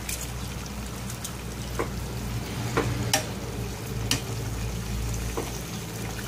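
Breaded chicken wings deep-frying in hot oil in a pot: a steady sizzle with a few sharp clicks scattered through it.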